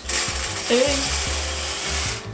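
Dried popcorn kernels poured from a cup into a metal pot of bubbling oil, water and sugar: a dense, steady rattle of many small kernels hitting the pan.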